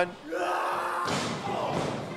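Thuds of punches landing in a wrestling ring, with a drawn-out shout about half a second in, followed by crowd noise.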